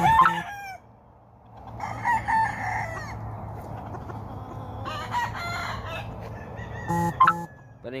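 Game roosters crowing, several crows one after another across the yard.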